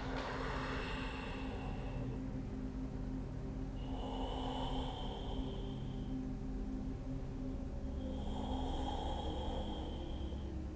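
A man's slow, deep breaths held in a seated forward fold: three soft, airy breaths about four seconds apart, over a faint steady low background drone.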